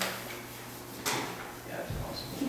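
A sharp click or knock, then another about a second later, with a short dull thump near the end.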